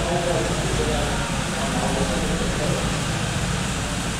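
Small boat's motor running steadily, with voices talking over it.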